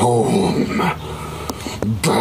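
A man's voice making wordless, drawn-out vocal sounds that rise and fall in pitch, louder in the first second and quieter after.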